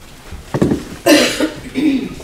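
A person coughing, about three coughs in quick succession, the middle one the loudest.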